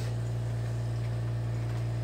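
Portable air conditioner running with a steady low hum.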